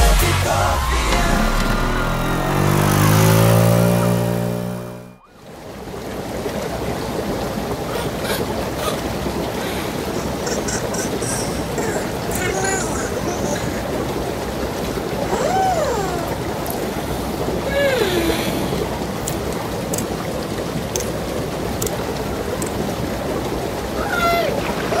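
Pop music that cuts off abruptly about five seconds in, followed by the steady bubbling of a spa bath's air jets. Twice around the middle, a voice makes a short sliding sound over the water.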